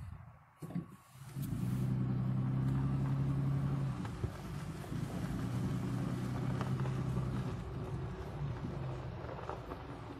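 Jeep engine running while driving, a steady low drone that comes up about a second in, is loudest for the next few seconds and slowly eases off toward the end. Two short knocks come just before it.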